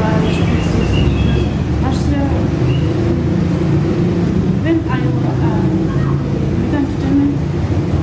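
Indistinct, muffled speech over a steady low rumble of room or background noise.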